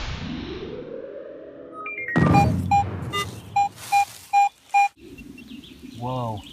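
Edited electronic transition sting: a rising synth sweep, then a hit followed by a string of short beeps in pairs. Near the end it cuts to quiet outdoor ambience.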